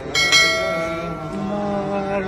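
A bell struck once just after the start, ringing with many clear high tones that slowly fade.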